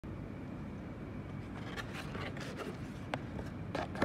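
A cardboard shipping box being opened by hand: intermittent scraping and rustling of the cardboard lid and flaps, with a sharp click about three seconds in, over a steady low background rumble.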